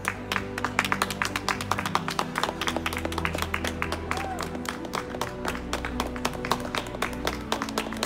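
A few people clapping quickly and unevenly to encourage an approaching runner, over background music with steady held notes.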